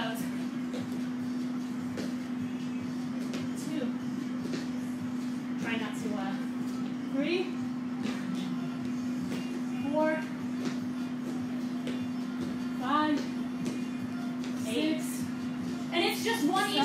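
A steady low hum, with a few short voice sounds of exertion breaking in during a set of jumping squat exercises.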